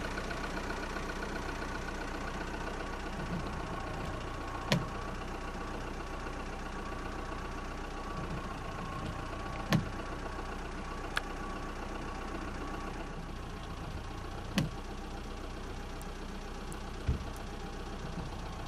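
Car engine running with a steady hum, heard from inside the vehicle, with about five short sharp knocks at irregular intervals.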